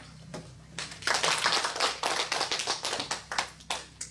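Audience applauding, starting about a second in and thinning out to a few last claps near the end.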